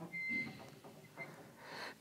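A short pause in a man's talk. The room is nearly quiet, with faint mouth and breath sounds, and a soft intake of breath near the end just before he speaks again.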